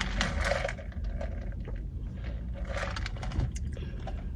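Ice rattling in a plastic cold cup as a straw is worked through the drink. The rattle dies away about a second in, leaving scattered faint clicks over a low steady hum.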